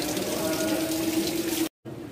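Water running, with people's voices over it; the sound stops abruptly shortly before the end.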